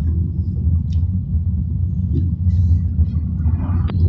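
Steady low rumble of a car being driven slowly, heard from inside the cabin: engine and tyre noise on the road, with a single sharp click near the end.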